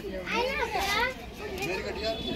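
Children's voices chattering and calling out, high-pitched, in one main burst that stops a little past the middle.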